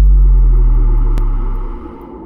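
A sound-effect boom for an animated logo: a loud, deep hit that starts suddenly and rumbles down over about a second and a half, over a steadier noisy layer that carries on after the boom fades.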